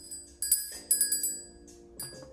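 Small brass hand bell rung with a few quick shakes, about four strikes in the first second, the bright ringing dying away shortly after.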